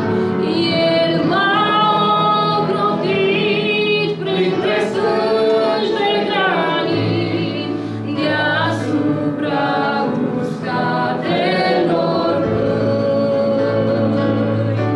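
A woman singing a Romanian worship song solo into a microphone, over a steady, sustained low accompaniment.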